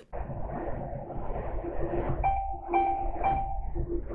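Lorry cab running at motorway speed: a steady low rumble of engine and road. About two seconds in, three short electronic beeps sound in quick succession.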